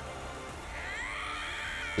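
Anime trailer music with a long, high-pitched scream that rises about half a second in, holds, and falls away near the end.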